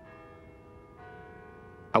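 Faint background music of sustained, bell-like tones, with a new tone sounding about a second in.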